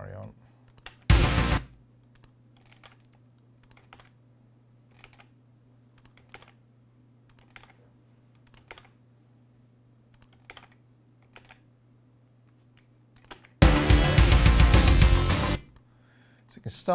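Computer keyboard and mouse clicks, about one a second, over a steady low hum, as kick-drum samples are pasted along a track. There is a short loud burst about a second in, and near the end about two seconds of loud drum-kit playback with the layered kick.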